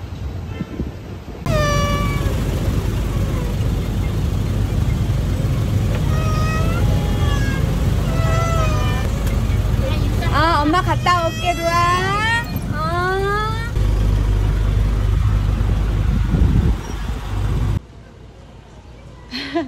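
A small child crying in high, wavering wails inside a bus, over the steady low rumble of the bus's running engine. The cries come in bursts and are thickest in the middle of the stretch.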